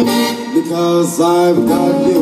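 Live big band music played loud through a concert PA: a melody of held notes that slide from one pitch to the next.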